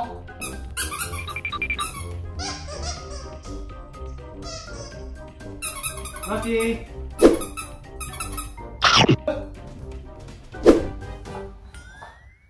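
Plush squeaky toy squeezed again and again, giving a series of short high-pitched squeaks over background music.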